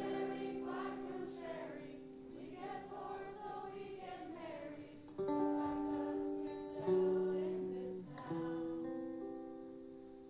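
Live band music led by acoustic guitar, with long held chords that change a little after five seconds, again near seven and again just past eight.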